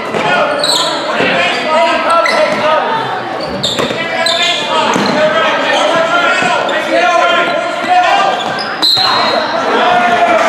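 Basketball game in a gym: voices calling out over a basketball bouncing on the hardwood floor, with a few short high squeaks, all echoing in the large hall.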